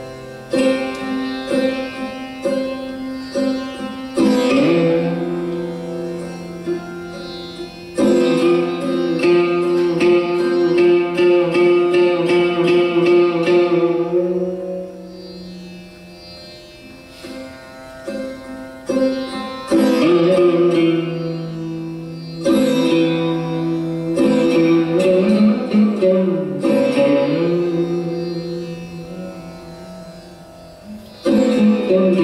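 Sarod played solo: plucked metal strings with sharp attacks that ring on and fade, strokes gathered in clusters with long sustained notes between them. Near the end the melody slides between pitches, and drone and sympathetic strings hum underneath.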